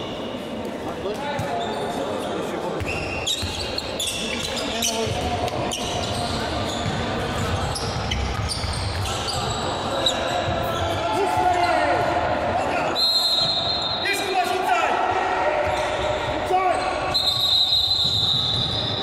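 Handball game sounds in a reverberant sports hall: the ball bouncing on the court floor, sneakers squeaking and players shouting. A referee's whistle sounds twice, about thirteen seconds in and again near the end.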